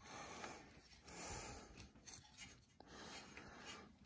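Near silence with faint scratching and rubbing as fingers work an ignition wire into its clips on a small engine, in a few soft spells.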